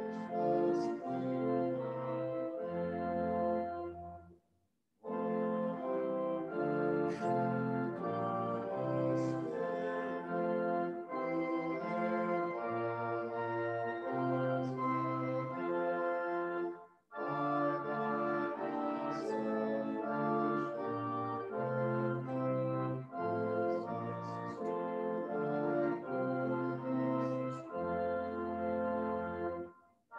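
Organ playing slow, sustained chords in phrases, with a short break about four seconds in and another about seventeen seconds in.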